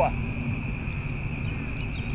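Outdoor background: a steady low rumble with a constant thin high-pitched whine over it, and two faint clicks about a second apart.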